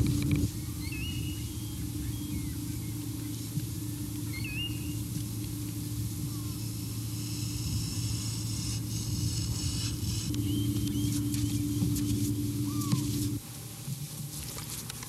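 A steady low rumbling drone with short, rising bird chirps heard now and then over it. The drone cuts off abruptly near the end.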